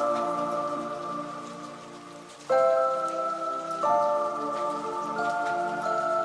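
Background music: soft, sustained chords that fade down, then a new chord enters sharply about halfway through, with two further chord changes after it.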